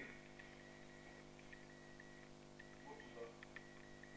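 Near silence: room tone with a steady low electrical hum and a faint high whine that keeps breaking off and coming back, plus a few faint light ticks.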